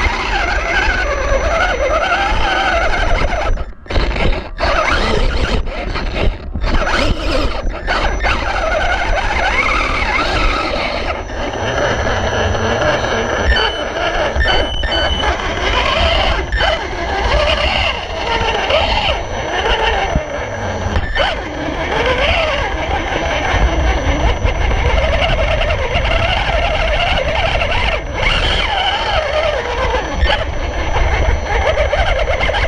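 Electric motor and gearbox of a 1/18 Losi Mini Rock Crawler whining as it crawls over rocks, the pitch rising and falling with the throttle, with a few brief stops a few seconds in.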